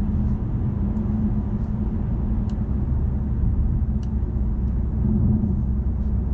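Cabin sound of a BMW M550d xDrive's quad-turbo 3.0-litre inline-six diesel at a steady cruise: a steady low engine drone mixed with tyre and road noise, with no revving.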